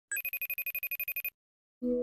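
Electronic telephone ringtone sound effect: a rapid high trill of about ten pulses a second for just over a second, which stops abruptly. A short steady tone starts near the end.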